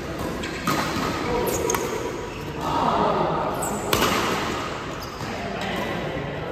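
Badminton rally: sharp racket strikes on the shuttlecock, the loudest about four seconds in, with short high shoe squeaks on the court floor between them.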